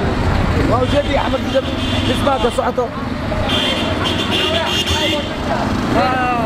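Auto-rickshaws passing on a street, their small engines running under people talking. About three and a half seconds in, a high steady tone comes in for about a second and a half.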